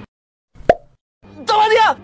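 A single sharp click, the sound effect of an animated subscribe button being pressed, about two-thirds of a second in, between stretches of silence.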